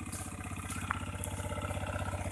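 Small motorcycle-type engine of a homemade four-wheeled buggy running at low revs with a steady rapid beat, growing slightly louder as the buggy moves slowly.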